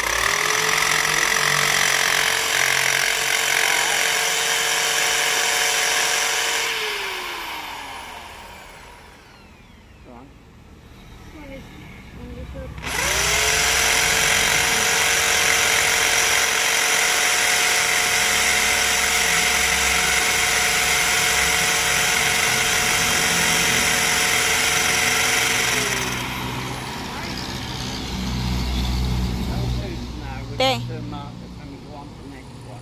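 Corded electric drill boring into a concrete wall in two runs. It spins up and holds a steady pitch for about six seconds, then winds down with a falling tone. After a pause of a few seconds it runs again for about thirteen seconds before winding down near the end.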